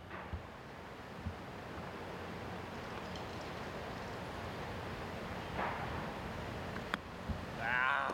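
A golf club striking a chipped shot with a single sharp click, a duffed chip, over steady wind noise. Near the end a drawn-out wavering groan of a voice follows.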